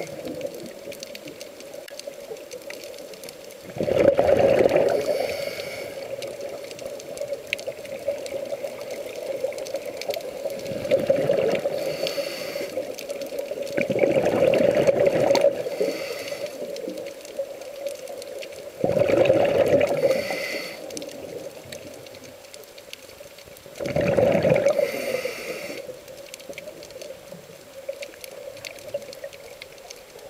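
Scuba diver breathing through a regulator underwater: exhaled air bubbles out in a loud gurgling burst about every five seconds, with quieter inhalation hiss between.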